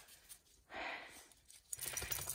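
Mostly quiet, with one short, soft hiss-like noise about a second in. A low rumble starts near the end.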